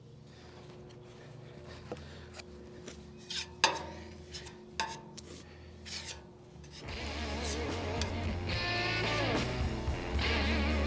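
Short, scattered scrapes and taps of a spreader smoothing body putty onto a steel car frame rail, the sharpest about four seconds in. Background guitar music comes in about seven seconds in and is louder than the scraping.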